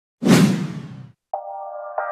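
An intro sound-effect whoosh with a low hit that fades out within about a second, followed after a short gap by a sustained electronic music tone starting.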